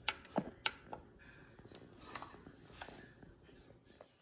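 Faint clicks of a button being pressed on an LED grow light's control box, about five in the first second, then a few softer ticks. The presses switch the fixture over to its far-red channel.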